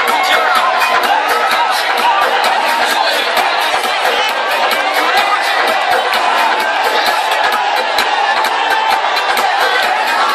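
Loud dance music played over a crowd shouting and cheering, recorded from inside the crowd. The sound is thin, with almost no bass.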